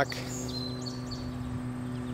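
Outdoor ambience: a steady low hum runs throughout, with a few short high bird chirps about half a second to a second in.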